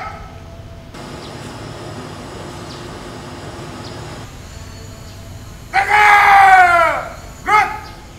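A ceremony commander shouts a two-part parade-ground drill command across the assembly. About six seconds in comes one long drawn-out call falling in pitch, then, about a second and a half later, a short sharp call. Before it there is a few seconds of quiet outdoor background.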